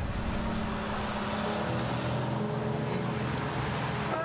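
Steady street traffic noise: a continuous rumble with a low engine hum.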